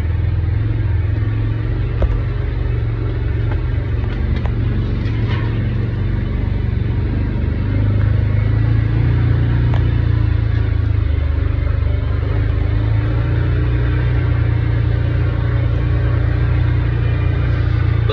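Side-by-side utility vehicle's engine running steadily while driving over a rough dirt track, a low even drone with a few light knocks and rattles; the engine note gets a little louder about eight seconds in.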